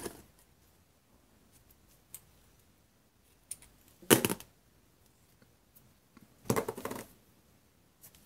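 Red Line double-sided adhesive tape being pulled from its roll and handled: two short bursts of noise, about four and six and a half seconds in, with a few faint taps between.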